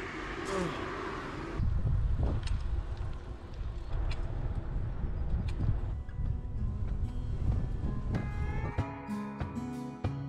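Low, steady wind noise on the microphone of a camera carried on a moving bicycle. Plucked acoustic guitar music comes in near the end.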